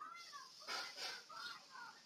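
Faint, high-pitched, meow-like vocal calls that glide up and down in pitch, with a brief breathy hiss about a second in.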